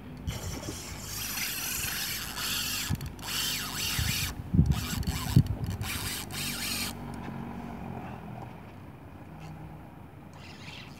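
Fishing reel working against a hooked fish: a dense whirring that runs for about seven seconds with several short breaks, then stops. A few sharp knocks sound about halfway through.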